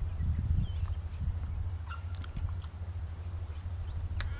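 Low wind rumble buffeting the microphone, with a few faint bird calls above it.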